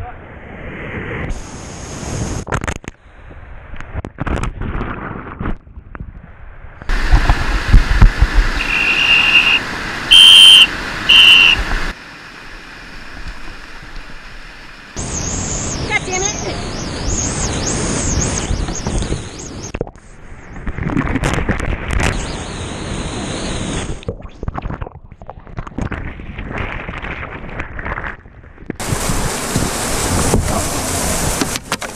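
Whitewater rapids rushing loudly around kayaks, heard close up from helmet and bow cameras in a series of short clips that cut in and out abruptly. A shout of "Oh God!" comes at the start, and a loud stretch in the middle carries a few short shrill high notes.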